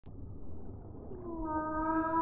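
Humpback whale song: low rumbling underwater noise, then about a second in a long moaning call that glides slightly down and holds steady.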